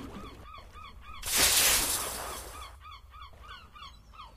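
Online slot game sound effects: a run of short honk-like calls, several a second, with a loud rushing noise burst about a second in that fades over the next second.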